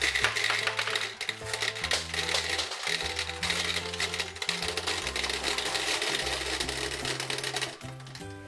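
Gumballs poured from a cup into a toy gumball bank: a dense, rapid clatter of small clicks that stops just before the end. Background music with a stepping bass line plays underneath.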